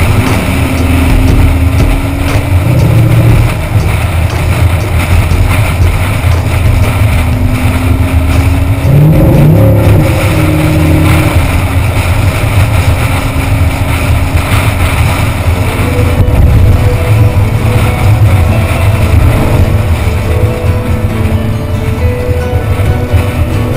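Chevrolet Corvette's V8 cruising at freeway speed, heard from a camera mounted low on the outside of the car, with heavy wind and road rumble over a steady engine note. The engine note shifts briefly about nine seconds in.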